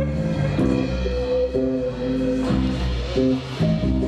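Rock band playing live, electric guitar chords ringing over a bass line, the notes changing every half second or so.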